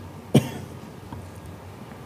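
A single short cough about a third of a second in, followed by quiet room tone.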